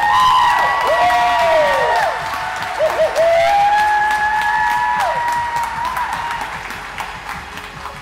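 Crowd of wedding guests clapping and cheering, with long held whoops and shorter rising-and-falling shouts over the applause. It dies down over the last few seconds.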